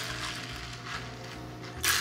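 A quiet stretch with a faint steady hum. Near the end a quick, dense clatter starts up: ice rattling against a glass as the iced coffee is stirred with a straw.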